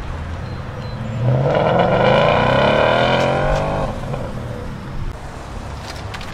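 A car engine under hard acceleration as a car pulls away: starting about a second in, its note climbs steadily in pitch for nearly three seconds, then fades away.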